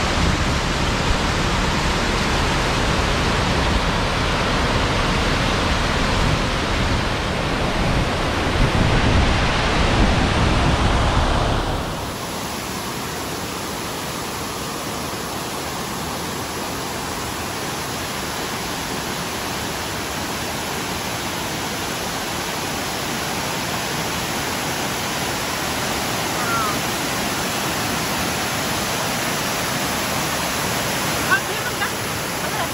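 Rushing water from a rocky cascading stream and waterfall, a steady loud hiss. About twelve seconds in it changes to a lighter, higher hiss with less deep rumble.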